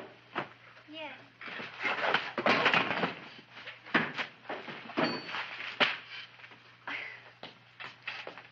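Indistinct speech mixed with a few sharp knocks, over a steady low hum on the soundtrack.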